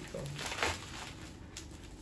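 Plastic courier pouch crinkling and tearing as it is pulled open by hand, loudest in the first second, then fainter crinkling.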